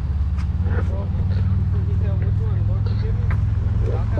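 A steady low rumble of vehicle noise, with faint voices talking in the background.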